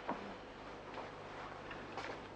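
A sharp click just after the start, then a few fainter, unevenly spaced ticks over a low steady room hum.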